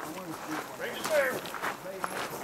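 Indistinct voices of people talking; no gunfire.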